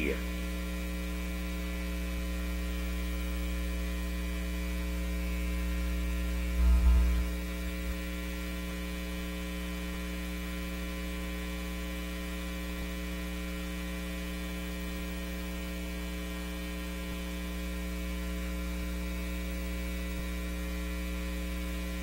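Steady electrical mains hum on the broadcast audio feed, with a brief low thump about seven seconds in.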